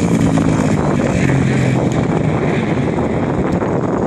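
Small kids' dirt bike engine running, its pitch easing down slightly and fading out after about two and a half seconds, with wind buffeting the microphone throughout.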